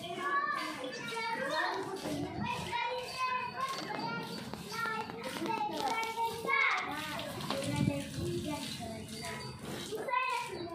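Children's voices talking and calling out, high-pitched and continuous.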